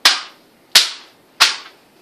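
A hand slapping taped paper drawings flat against a wall: three sharp slaps, each about two-thirds of a second after the last and briefly trailing off.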